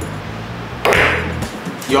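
A cue striking the cue ball on a carom billiards table, giving a sharp clack of balls about a second in.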